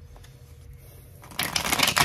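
A deck of tarot cards handled in the hands: a short burst of rapid card shuffling and rustling that starts past halfway and lasts under a second.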